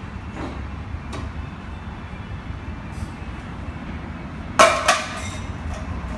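Two sharp metallic clanks in quick succession near the end, each ringing briefly, over a steady low rumble: metal striking metal under a car on a shop lift.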